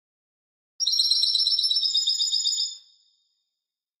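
A small songbird singing a rapid, high trill of quickly repeated notes, starting about a second in and fading out after about two seconds.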